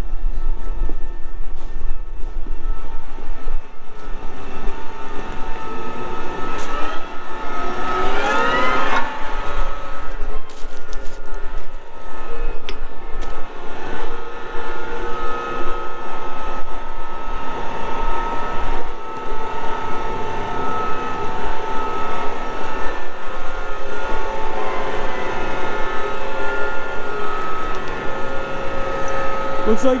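Case IH Magnum 380 CVT tractor running and manoeuvring, its drive giving a steady hum of several tones, with a rise in pitch about eight seconds in.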